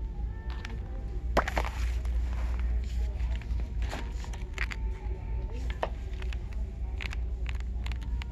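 Handling of a glossy paperback coloring book: a scattered string of sharp clicks and crinkles as it is held and its pages are turned. Underneath runs a steady low hum.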